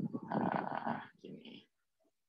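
A person's voice making a low, non-speech sound lasting about a second and a half, which then breaks off.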